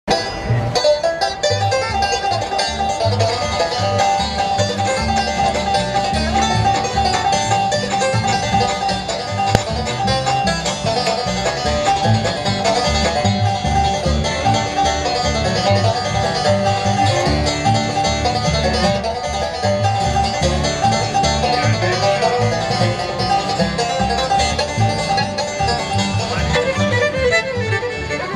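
Live bluegrass band playing an instrumental, with banjo picking prominent over fiddle, mandolin, acoustic guitar and upright bass.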